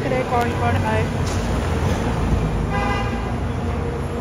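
Road traffic under a covered pickup roadway: a steady low rumble of idling and slow-moving cars, with background voices in the first second. A short car horn toot sounds about three seconds in.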